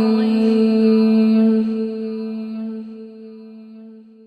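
Chanted mantra: a voice holds one long, steady note that fades away over the last two seconds.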